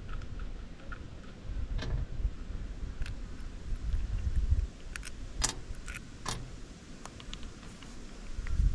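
Small steel nuts, washers and terminal parts of a tractor starter solenoid clinking as they are handled and set down on a steel checker-plate deck: scattered sharp metallic clicks, most of them between about five and six and a half seconds in, over a low rumble.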